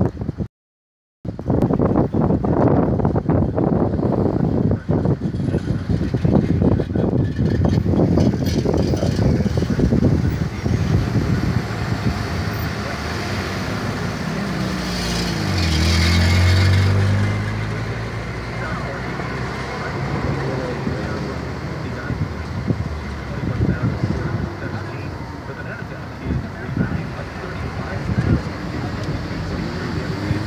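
City traffic and road noise heard from a car in slow street driving, rough and gusty for the first several seconds. About halfway through, a vehicle's engine passes close by, its pitch bending as it goes past.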